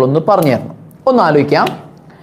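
Speech only: a man's voice in two short phrases, the second starting about a second in.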